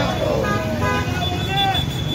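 Voices of a marching crowd shouting or chanting, with a thin steady high tone joining in about halfway through.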